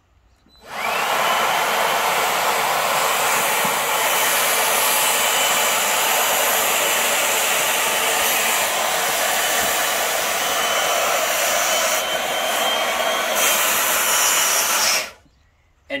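DeWalt 20-volt cordless leaf blower running steadily, its nozzle pressed against an inflatable boat's valve to blow up the tube. It starts about a second in with a rising whine as the motor spins up, rushes evenly for about 14 seconds, and cuts off about a second before the end.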